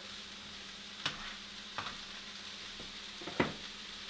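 Chicken and vegetables sizzling steadily in a skillet during a stir fry, with a few sharp clicks of a utensil on the pan, the loudest about three and a half seconds in.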